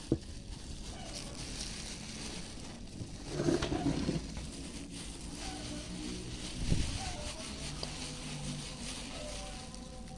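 Thin plastic food gloves rustling and crinkling as hands roll a soft biscuit-and-milk mixture into a ball, louder for a moment about three and a half seconds in, with a single knock near seven seconds.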